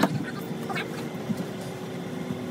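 A small motor humming steadily at one fixed pitch, with a few faint knocks over it.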